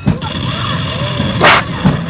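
Pirate-ship attraction's cannon effect firing: a boom at the start, then a short, sharp hiss about one and a half seconds in as a puff of mist shoots from the cannon port.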